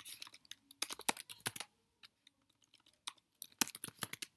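Typing on a computer keyboard: two short runs of keystrokes separated by a pause of about a second and a half.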